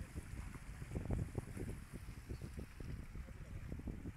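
Storm wind buffeting the microphone in irregular gusts, with a faint steady hiss of heavy rain behind it.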